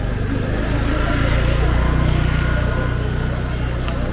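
A motor vehicle's engine running close by, a steady low hum that swells a little through the middle, with voices in the background.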